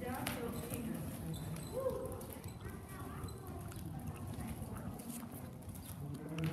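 Hoofbeats of a horse walking on the dirt footing of an indoor arena, with faint voices in the background.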